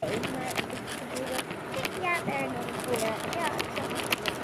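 Outdoor background noise with faint, distant voices and scattered small clicks.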